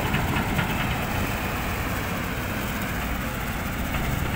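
Diesel engines of hydraulic excavators, a Caterpillar 320D close by, running steadily as the machine works.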